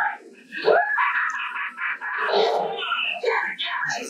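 A raised, drawn-out human voice with no clear words, sliding up in pitch just under a second in and carrying on to the end.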